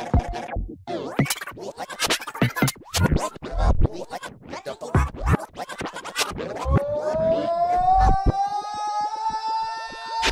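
Live-looped electronic dance music: a drum beat that breaks into fast, irregular choppy hits, then from about two-thirds of the way in a long held note that slowly rises in pitch over the beat.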